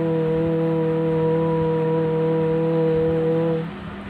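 A single voice chanting a long, steady 'Om' on one held pitch for meditation, closing off with a hum about three and a half seconds in.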